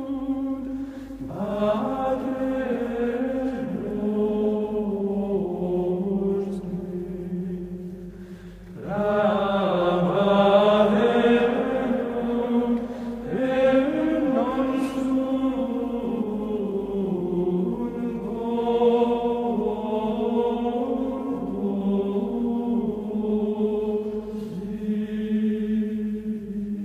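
Slow sung chant as background music: voices holding long, gliding notes in drawn-out phrases, with a brief lull about eight and a half seconds in before the singing picks up again.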